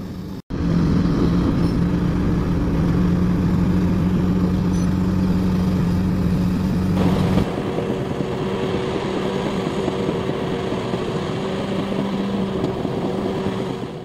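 Diesel engines of large crawler bulldozers running at work, first a Shantui SD90C5 with a steady low drone, then, about seven seconds in, a Liebherr PR 776 with a higher hum.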